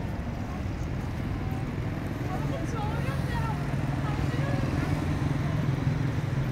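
Street ambience: a vehicle engine's low hum that grows louder about halfway through, with faint voices of passers-by.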